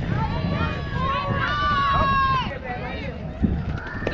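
Voices shouting and calling out, with one long high call held for about a second near the middle, over a steady low rumble.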